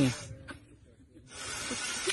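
A steady hiss of air after a short lull, starting about a second and a half in: breath blown by mouth into the valve of a large inflatable.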